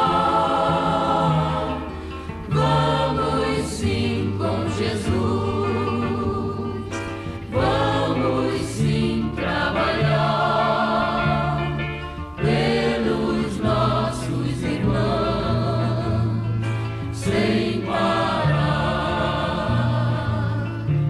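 Choir singing a Portuguese-language hymn over instrumental accompaniment, with held bass notes changing every second or two beneath the wavering voices.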